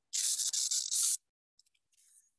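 A stylus scratching and rubbing on a tablet or pen-display surface for about a second, in a few quick strokes, while the pen fails to ink.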